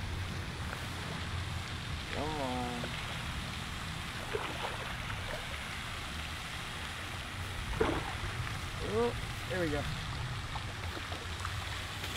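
Steady wind rumbling on the microphone beside a pond, with a few short, faint voices.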